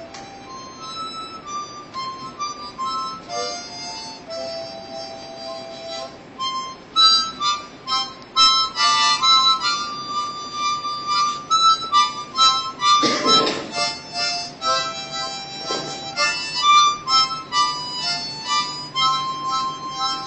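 A harmonica played in cupped hands: a melody of single held notes moving up and down, quieter and sparser at first, then busier and louder from about seven seconds in.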